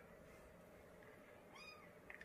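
Near silence, then near the end a single short, faint cat meow that rises and falls in pitch.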